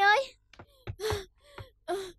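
A girl's voice calling out urgently, drawing out "ơi", then a few short, breathy exclamations.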